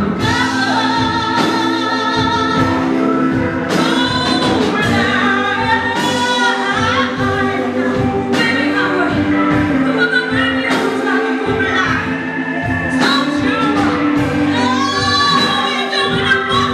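Live blues band: a woman sings the lead line with bending, wavering notes over electric guitar, bass guitar and drums.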